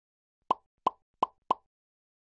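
Four short pops in quick succession, starting about half a second in: a sound effect for an animated logo, timed to sound-wave arcs appearing beside a microphone icon.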